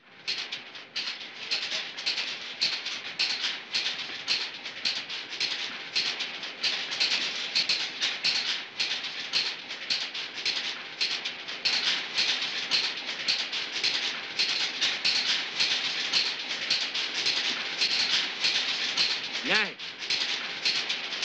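Industrial factory machinery running, a dense, fast metallic clatter that holds steady.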